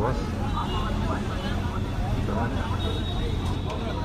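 Steady low drone of a bus engine heard from inside the passenger cabin, with people talking over it.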